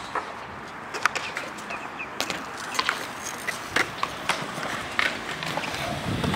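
Skatepark sounds: wheels rolling on concrete, with scattered sharp clacks and knocks, about half a dozen of them.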